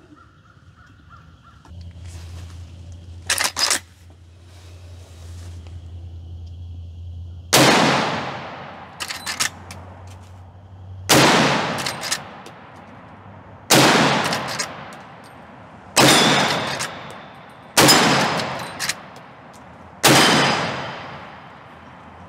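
Marlin 1895 lever-action rifle in .45-70 firing six shots, two to three and a half seconds apart, each shot trailing off in a short echo. The lever is worked between shots with quick metallic clacks.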